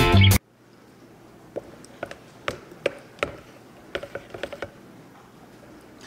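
Guitar music that cuts off suddenly just under half a second in, then a quiet stretch with about eight light knocks and taps: a plastic stick-blender head knocking against the side of a plastic pitcher of soap batter, the blender's motor off.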